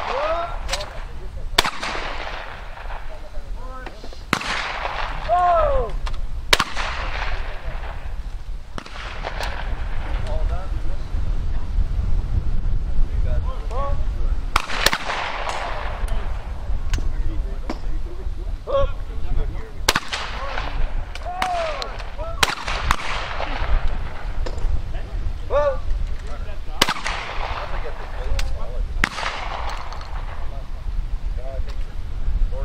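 Shotguns firing at clay targets in a trap shoot: about nine single shots a few seconds apart, each followed by a trailing echo.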